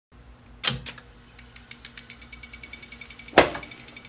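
TEAC A-4300 reel-to-reel tape deck's transport: a loud mechanical clunk about half a second in, then a steady run of rapid ticking, about nine a second, and another loud clunk near the end.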